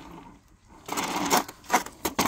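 A planted succulent pot knocked down on a work tray to settle the freshly added potting soil: a rustling scrape about a second in, then sharp knocks near the end.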